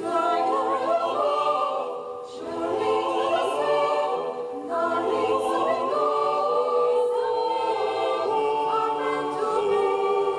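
Mixed choir of women's and men's voices singing a cappella in several parts, holding chords and moving from note to note, with a short drop in loudness about two seconds in.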